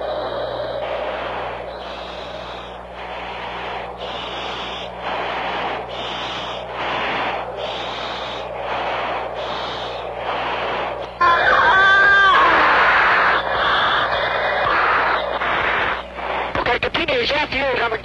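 An F-15 pilot's breathing through his oxygen-mask microphone, heard over the cockpit intercom as pulses of hiss about once a second over a steady low hum. About eleven seconds in comes a louder strained vocal sound.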